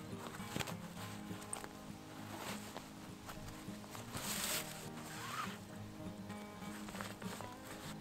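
Quiet background music with held low notes. Over it come a few brief soft rustles of nylon webbing being tugged through a backpack's side cinch-strap buckles.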